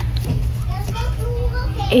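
Steady low hum of a cruise ship's machinery, with faint voices murmuring over it.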